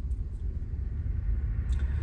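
Steady low rumble of a moving car heard from inside the cabin: engine and road noise.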